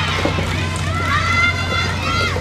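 Drawn-out, high-pitched shouts from young women at a soft tennis match. One long call starts about a second in, rising and then falling, over a steady low hum.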